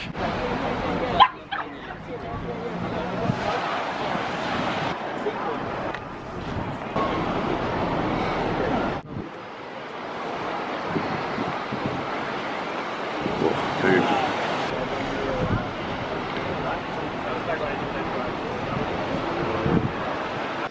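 Busy seaside promenade ambience: a steady wash of outdoor noise with people talking in the background and a dog barking now and then. The sound drops out abruptly twice, about a second in and about nine seconds in.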